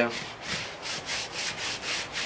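Shoe-cleaning brush scrubbing a wet white sneaker coated in cleaning solution, in quick back-and-forth bristle strokes, about four a second.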